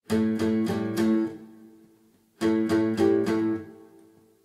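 Guitar opening a song, with no other instruments: two short phrases of chords, each left to ring and fade, with a brief pause between them.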